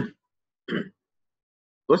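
A man clears his throat once, briefly, in a pause between spoken phrases.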